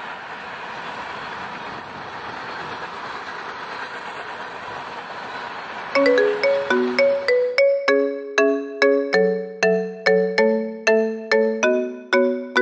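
Freight train cars rolling past on the rails, a steady noise that cuts off about halfway. Then a plinking marimba-like mallet melody starts, about three notes a second.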